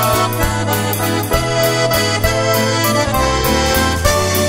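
Accordion playing a waltz melody over sustained bass notes, with a steady beat.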